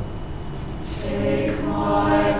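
Mixed choir singing: a phrase ends and leaves a pause of about a second, then a sharp 's' and the voices come back in together on a held chord.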